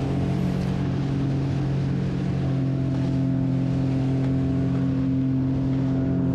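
Sea-Doo jet ski engine running steadily under load, with water rushing past the hull; the ski is heavy with water inside and slow to get back up on the plane.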